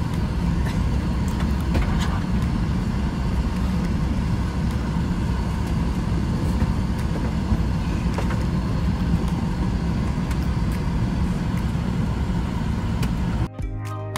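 Steady cabin noise of a jet airliner in flight: a low, even drone of engines and rushing air. Music comes in near the end.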